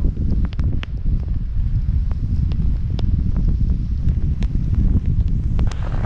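Burton Step On snowboard bindings clicking irregularly as the board rides through powder, over loud wind rumble on the action-camera microphone. The clicking is a little movement of the boot at the binding's toe clips, typical of a footbed not adjusted to the boot size.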